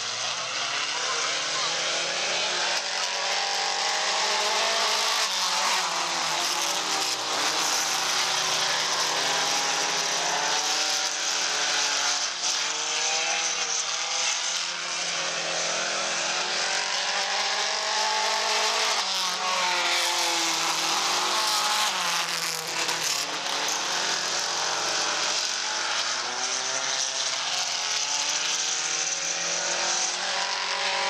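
Several mini stock race car engines running around a dirt oval, many overlapping engine notes rising and falling in pitch as the cars go through the turns.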